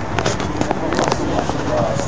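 Voices of a huddled football team talking and calling out over one another, with a handful of sharp smacks in the first second.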